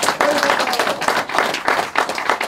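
A small audience applauding with dense, irregular hand claps.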